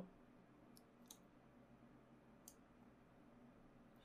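Near silence with three faint, short computer mouse clicks, the first two close together and the last about a second and a half later.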